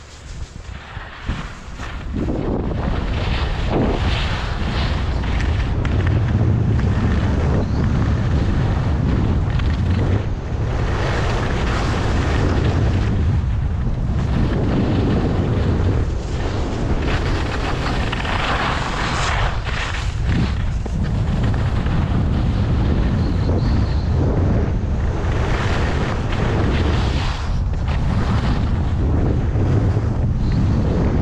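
Wind rushing over the microphone of a skier descending the slope, loud from about two seconds in. A hiss swells and fades every few seconds as the skis carve through the turns on the snow.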